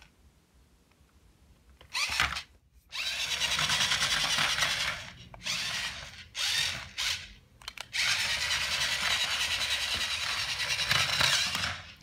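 Small electric motor and plastic gears of a battery remote-control toy car whirring as it drives across a tile floor. After about two seconds of quiet it runs in spurts that start and stop several times, the longest run near the end.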